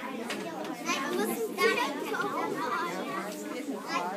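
Many children chattering at once, with adults' voices mixed in, a continuous babble of overlapping voices in a crowded room. It is loudest about a second and a half in.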